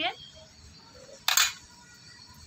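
A steel spoon scraping once against a steel plate, a short sharp metallic scrape a little over a second in, while masala is spooned into a bitter gourd.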